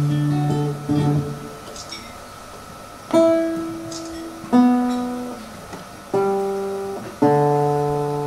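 Acoustic guitar playing single chords, about six of them, each struck once and left to ring out and fade before the next.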